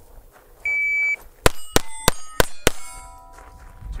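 A shot timer beeps once for about half a second. About a third of a second later come five quick .22 LR shots from a KelTec CP33 rimfire pistol, roughly a third of a second apart, and steel plates ring as they are hit. The last ring hangs on for about half a second.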